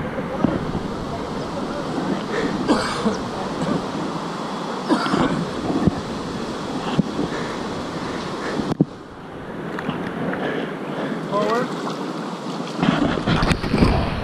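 River water rushing around a kayak, with splashes of paddle strokes and wind buffeting the microphone. The sound cuts off abruptly a little before the halfway point and resumes quieter, and a voice is briefly heard near the end.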